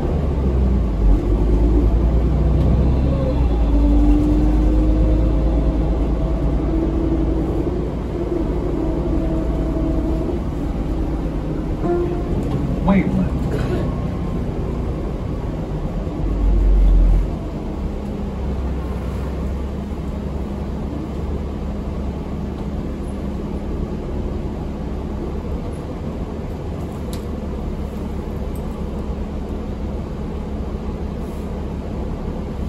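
Low, steady rumble of a New Flyer D40LF diesel city bus heard from inside the passenger cabin, louder in the first half, with a brief low thump just past halfway.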